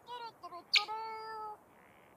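Cartoon small birds' vocal calls: a few short calls, then a sharp click about three-quarters of a second in, followed by one call held steady for about three-quarters of a second.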